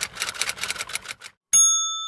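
Subscribe-animation sound effects: rapid typewriter key clicks, about nine a second, stopping about 1.3 seconds in, then a single bright bell ding at about a second and a half that rings on and slowly fades.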